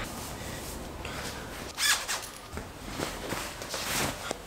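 Clothing rustling as a hoodie is pulled off and other clothes are handled, with one brief louder swish of fabric about two seconds in.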